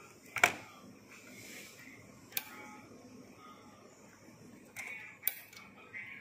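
Plastic rubber-band bracelet loom being handled and pressed on a table: three sharp clicks, the loudest about half a second in.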